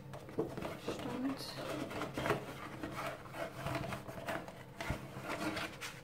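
Cardboard and stiff plastic packaging handled by hand: irregular rustling, sliding and scraping with scattered light clicks as a cardboard backdrop insert and a plastic figure stand are taken out of an action figure box.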